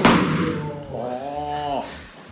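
A body landing on the padded mat in a breakfall from a wrist-turn throw, a sharp thud right at the start that dies away. This is followed by a drawn-out vocal exclamation, held for about a second and rising then falling in pitch.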